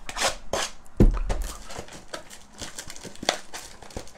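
Plastic shrink-wrap on a trading-card hobby box being slit and torn off: a run of crinkles and short scratchy strokes, with a knock about a second in as the box is handled.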